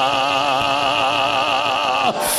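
A man's voice holding one long, loud note with vibrato through a microphone, a preacher's sustained sung cry.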